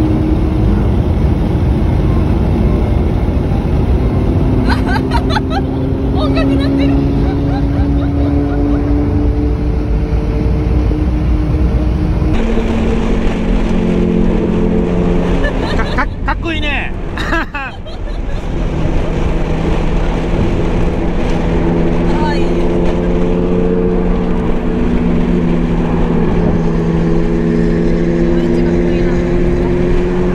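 Lamborghini V12 engines cruising on the expressway, a steady loud engine note whose pitch drifts slowly upward. About 16 seconds in the note breaks off briefly and returns at a lower pitch, as an upshift does.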